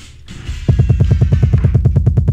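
A DJ mix playing from the decks. Quieter drum hits give way, about two-thirds of a second in, to a fast, even bass roll of about a dozen pulses a second.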